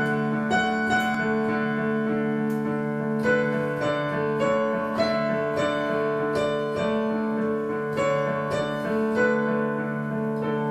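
Digital piano played solo: sustained chords over held low notes, with new notes struck about every half second.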